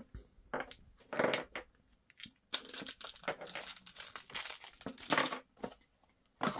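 Clear plastic packaging bag crinkling as it is handled. The crinkling comes in scattered bursts at first, then in a dense run from about halfway in to near the end.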